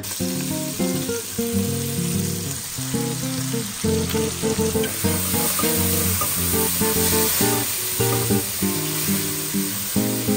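Strummed acoustic guitar background music over a steady sizzle of food frying in a Dutch oven: short ribs browning, then chopped onions being stirred in the rendered fat.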